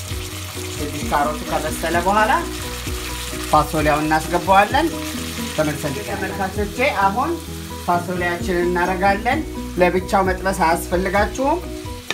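Carrots and onion sizzling in oil and sauce in a nonstick frying pan while a wooden spoon stirs them, with melodic background music over it.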